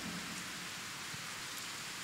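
A steady, even hiss of background noise with no speech in it.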